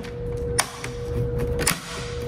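A printed-circuit-board busbar being worked down over the terminal studs of LiFePO4 battery cells, a tight fit: handling noise with two sharp clicks, about half a second in and again near the end, over a steady faint hum.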